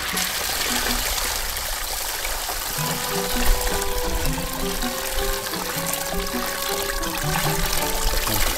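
Water splashing and pouring as wet coffee parchment is washed by hand in a plastic tub and then tipped out over a perforated tray, under background music with a melody that grows clearer about three seconds in.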